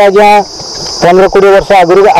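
A man speaking close to the microphones, pausing briefly about half a second in, over a steady high-pitched insect drone from crickets or cicadas.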